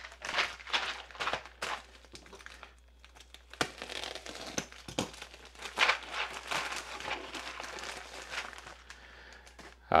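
A white mailing bag being crinkled and torn open by hand, in irregular rustles and crackles.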